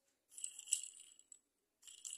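A bristle brush scrubbing the metal underside of a die-cast Hot Wheels pickup: a scratchy hiss for about a second, starting a little after the beginning, then again near the end.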